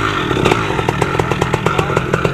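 Two-stroke paramotor engine running just after being started, a rapid even string of pops over a low hum. The pilot thinks it is a little flooded.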